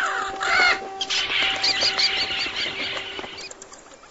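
Bird calling with crow-like caws, then a fast run of high repeated chirps, over a steady low tone.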